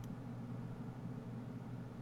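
Quiet room tone: a faint steady hiss with a low hum underneath, and no distinct event.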